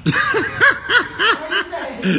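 A person laughing: a run of about six short "ha" bursts, each rising and falling in pitch, about three a second.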